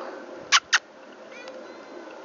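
Two quick hissing 'pss' calls, about a fifth of a second apart, made by a person calling to a cat.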